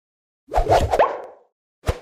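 Cartoon-style editing sound effects: a rising, swooshing sound about half a second in, then one short sharp pop near the end.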